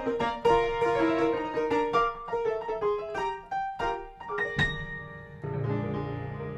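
Solo acoustic grand piano played in a New Orleans jazz style: a run of notes and chords, a sharp high accent about four and a half seconds in, then a low chord struck and left ringing.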